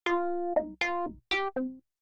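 Short cartoon title-card jingle: five bright, separate notes in quick succession that stop near the end.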